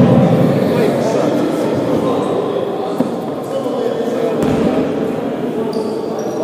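Basketball game noise in a large sports hall: indistinct voices echo, a basketball bounces on the wooden court, and there is one sharp knock about three seconds in.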